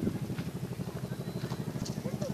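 UH-1H Huey helicopter approaching, its two-bladed main rotor beating in a fast, even rhythm.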